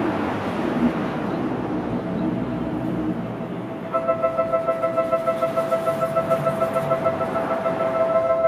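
Seibu commuter train running in to the platform, then from about four seconds in an electronic warning chime of steady tones pulsing about three times a second joins it and keeps on.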